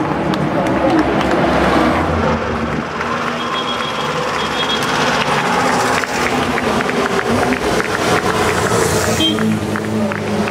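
Engine of a vintage open racing car driving slowly past, mixed with crowd chatter and music.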